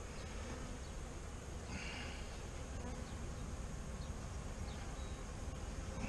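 A colony of Saskatraz honeybees buzzing steadily around an opened hive.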